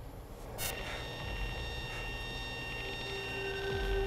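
Short-film soundtrack: a low rumble, then, starting suddenly about half a second in, several steady high ringing tones that hold on. A lower steady tone joins near the end.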